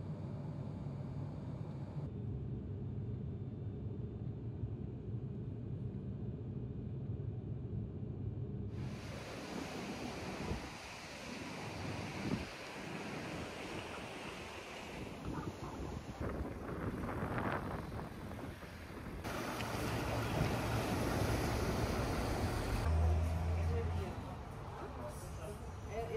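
Steady low drone of a propeller aircraft heard from inside the cabin. About nine seconds in it gives way to wind rushing on the microphone with surf washing on the shore.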